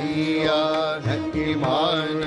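Sikh devotional kirtan music: a passage between sung lines, with held melody notes over a hand-drum accompaniment.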